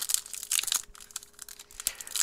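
Foil-lined trading card pack wrapper crinkling and tearing as hands work it open, with irregular high crackles throughout.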